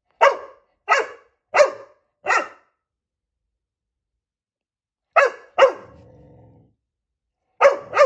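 Black Labrador puppy barking at its own reflection in glass fireplace doors: four sharp barks about 0.7 seconds apart, a pause of a couple of seconds, then two more barks, the second trailing off into a low drawn-out sound for about a second, and another bark at the very end.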